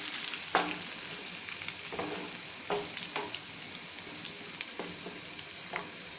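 Potatoes and onions frying in oil in a black pan, sizzling steadily. A wooden spatula scrapes and knocks against the pan a few times as they are stirred.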